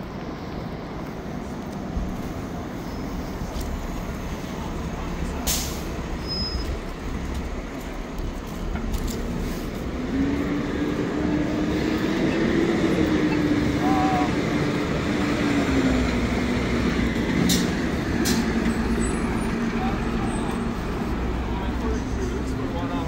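City street traffic at a busy downtown intersection: a steady wash of passing vehicles, getting louder about halfway through, with a large vehicle's low hum rising and then falling over about ten seconds.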